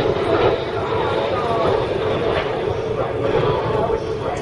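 Jet engines of a formation of display jets making a smoke pass, heard as a steady rumble, with people's voices over it.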